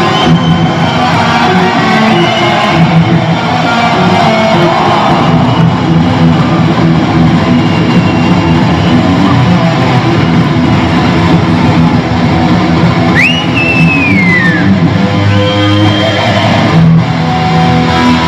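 Electric guitar solo played live at high volume, with a note bent sharply upward about thirteen seconds in that then slides back down over the next second or so.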